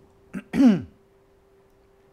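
A man clearing his throat: a short catch, then a louder voiced 'ahem' that falls in pitch, all within the first second.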